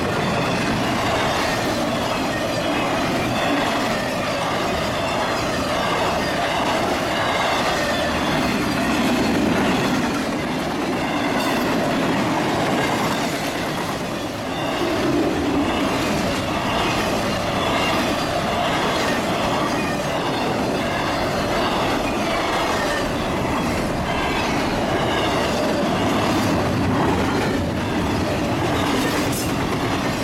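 A double-stack container freight train rolling past at steady speed, its wheels rumbling and clattering on the rails without a break.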